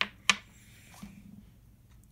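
Two sharp metallic clicks about a third of a second apart, the second louder, as a steel tuning pin just pulled from the pin block is handled, then quiet room tone.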